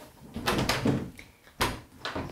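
An interior door being shut and its lever handle worked: shuffling movement, then a single sharp knock of the door or latch about one and a half seconds in.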